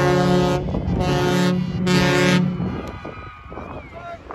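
Stadium air horn sounding for a touchdown: a long blast ends about half a second in, followed by two short blasts about a second apart, each a low two-tone honk. After them only the quieter murmur of the stadium remains.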